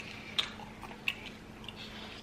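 Mouth sounds of someone chewing food, with a few short wet clicks and smacks, the clearest about half a second and a second in.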